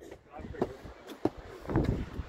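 Indistinct voices with a few light knocks, footsteps on stone steps, and a louder low rush near the end.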